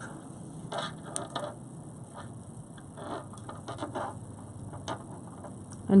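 Soft rustling and scraping with scattered light ticks from hands working leather cord through a knot on a beaded bracelet.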